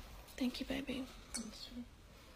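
A woman speaking quietly and indistinctly, in a few short phrases, softer than her normal talking voice.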